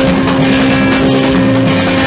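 Loud rock music in an instrumental stretch between vocals, with one distorted note held steady over dense, noisy band sound.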